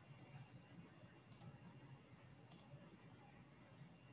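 Two short, faint double clicks of a computer mouse about a second apart, with a fainter click near the end, over near silence.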